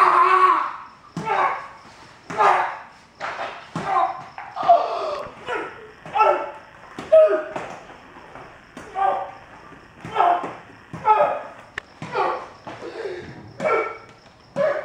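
A person's voice in loud, short phrases, echoing in a large room, with a single sharp knock near the end.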